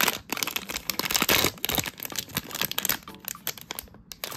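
Foil-printed plastic blind-box bag crinkling and tearing open as the figure is pulled out, a dense run of irregular crackles that is busiest about a second in.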